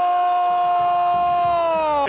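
A male football commentator's long, held goal cry ('¡Goooool!'): one steady high-pitched vowel that falls slightly in pitch as it ends.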